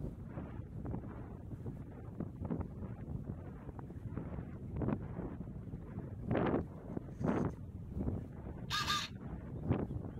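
Wind buffeting the camera microphone during a paraglider flight, with stronger gusts a few seconds in. Near the end, a short harsh pitched call lasting about a third of a second.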